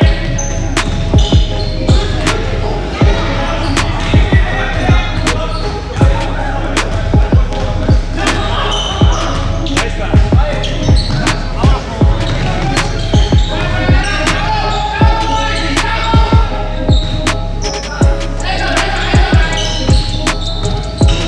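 A basketball being dribbled on a hardwood gym floor: sharp bounces in an irregular rhythm of about one to two a second, over a steady low hum.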